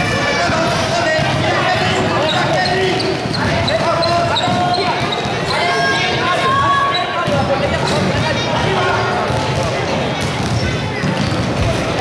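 Basketball bouncing on a sports-hall court during a youth game, under overlapping shouts and chatter from children and spectators.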